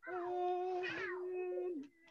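A voice humming a long held note that ends near the end, with a second sliding vocal sound that rises and falls over it twice.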